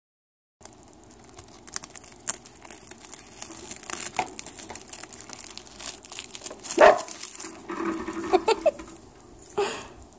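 A pet rat nibbling and tugging at a sheet of dry roasted seaweed: a steady run of small crisp crackles and crinkles, with one louder tearing crackle about two-thirds of the way through.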